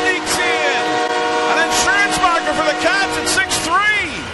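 Arena goal horn sounding a long, steady chord after a goal, with the crowd cheering and yelling over it.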